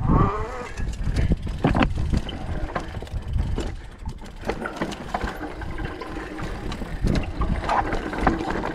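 Mountain bike riding over a rough, rocky dirt trail: a steady rumble from the tyres with frequent irregular clattering knocks from the bike as it hits rocks and bumps.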